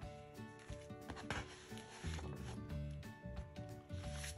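Paper and thin cardboard rustling and rubbing as a cut-out cardboard wreath is moved aside and a magazine is turned over, most of it a little over a second in. Quiet background music plays under it.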